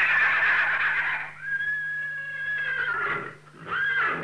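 Horses whinnying in an animated soundtrack: long, drawn-out high calls, one fading about a second in, another held for about a second and a half, and a third starting near the end.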